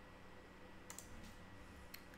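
Near silence: room tone with a few faint computer clicks about a second in and again near the end.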